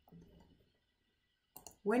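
Two short mouse clicks about one and a half seconds in, as a software menu is opened, in an otherwise near-silent pause between spoken sentences.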